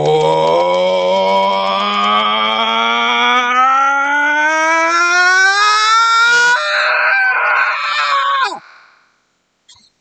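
A man's angry voice in a deliberate vocal exercise, sliding steadily upward from a low tone to a high one over about six and a half seconds, then breaking into a raw scream for about two seconds before dropping sharply in pitch and cutting off.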